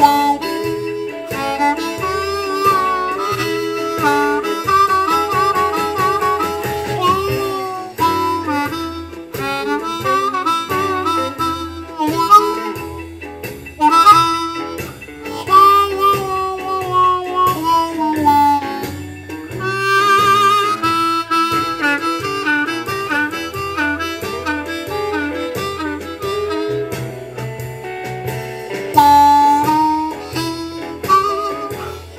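Blues harmonica in A, a diatonic harp, improvising on holes two and three only, with notes held and bent so that they slide down in pitch. It plays over a medium shuffle backing track with a repeating bass line.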